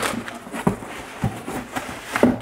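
Crumpled brown kraft packing paper rustling and crinkling as a hand digs through it inside a cardboard box, with a short sharp knock at the start.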